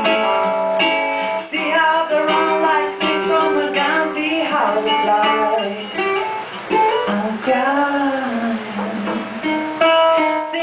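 Live acoustic duo: a woman singing a melody over a strummed ukulele, with long sliding vocal notes.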